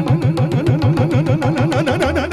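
Tabla played in a fast rhythmic run, about six strokes a second, the bass drum (bayan) sliding up in pitch on each stroke under crisp strokes on the treble drum (dayan).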